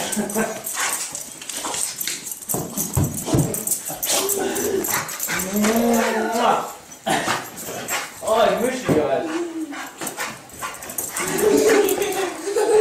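A dog whining and whimpering in repeated wavering cries, mixed with people's emotional voices.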